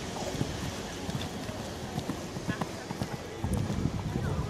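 Hoofbeats of a Haflinger stallion cantering on grass turf, a run of dull thuds that grows louder near the end.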